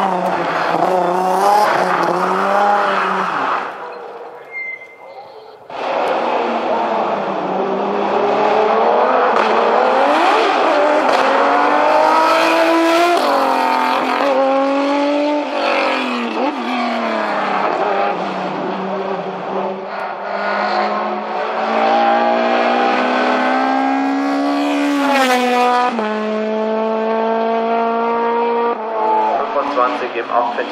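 Hillclimb race car engines under hard acceleration, revving up and falling in pitch with each gear change as the cars pass. The sound drops briefly about four seconds in, then a second car runs loud, with repeated rising sweeps through its gears.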